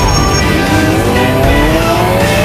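Off-road race vehicle's engine accelerating, its pitch rising steadily through the last second and a half, under a background music track.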